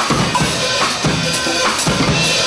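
Live drum kits playing a ska beat, with bass drum and snare strikes in a steady, evenly spaced rhythm.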